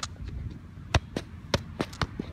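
A few sharp thuds of a soccer ball being kicked up off the foot in a clumsy attempt at keepy-uppies, with the clearest knocks about a second in and about a second and a half in. The juggling attempt fails.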